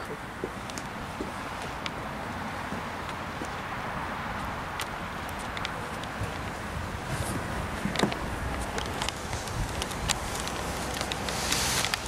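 Steady outdoor wind noise with a few faint knocks, such as shoes on the wooden pier railing.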